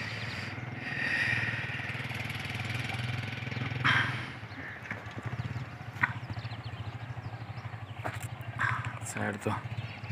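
Motorcycle engine running at low speed, a steady low hum, with a few brief faint sounds over it.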